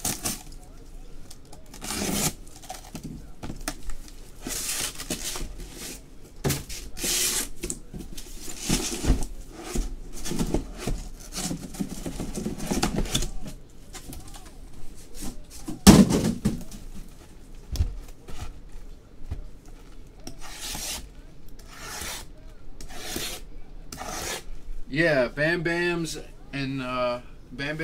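Cardboard hobby boxes being handled and slid against each other as a case is unpacked: an uneven run of rubbing and scraping strokes, with one louder thump about sixteen seconds in.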